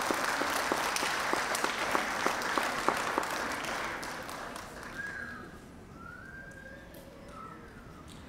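Audience applauding, the clapping dying away about halfway through.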